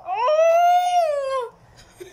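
A woman's single long, drawn-out cry of pain, rising in pitch, held, then falling away and stopping about a second and a half in, as a black peel-off mask is pulled from her cheek.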